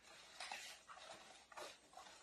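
Faint rustling of cloth garments being handled, in a few brief rustles.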